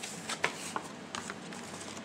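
Light rustling with a few short clicks, from cosmetic packaging being handled by hand.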